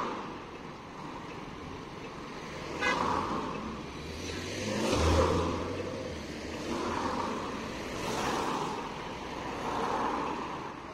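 Road traffic: cars passing one after another, the sound swelling and fading several times, loudest about halfway through.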